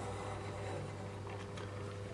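Faint steady low electrical hum from the heater's mains setup, its bar element on a ballasted supply and slowly warming up.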